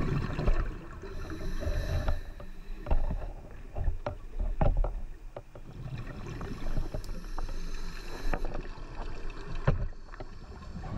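Underwater sound of a scuba dive picked up by a GoPro in its waterproof housing: a steady low rumble of water with scattered short knocks and clicks.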